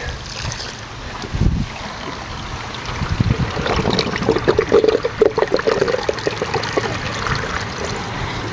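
Water from a garden hose running into a homemade plastic toilet bowl and draining down the hole in its bottom, with bubbly gurgling through the middle of the clip as the water swirls down the drain.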